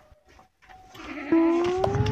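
Near silence for about a second, then a goat bleating in one long call that rises slightly in pitch.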